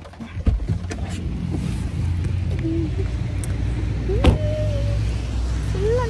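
A sharp knock about half a second in, then a steady low rumble of motor vehicles, with a brief hum from a voice about four seconds in.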